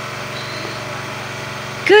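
A steady low hum of a running motor, even in level and pitch. A voice breaks in near the end.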